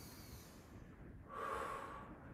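A woman breathing hard during an exercise: a soft breath at the start, then a stronger rushing exhale from about a second and a half in, timed to pulling an elastic band down.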